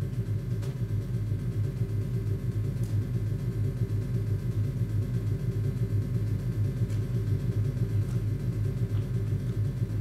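Steady low rumble on the soundtrack of a documentary film, played back over a lecture hall's loudspeakers.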